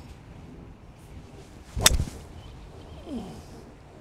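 A seven wood striking a golf ball off the fairway: a single sharp crack about two seconds in. The strike is called pure, a cleanly struck shot.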